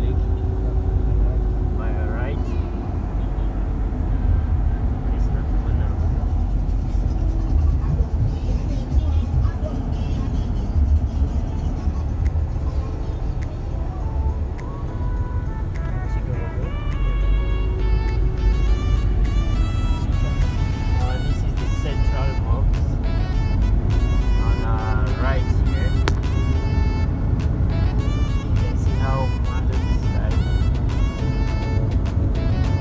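Low, steady rumble of a car's engine and tyres heard from inside the cabin while driving through town traffic. About halfway through, music with clear pitched notes comes in over the road noise and carries on.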